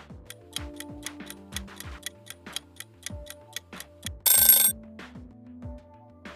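Quiz countdown-timer sound effect: clock ticking about four times a second over background music, ending about four seconds in with a brief, loud alarm-like ring. The music carries on after the ring.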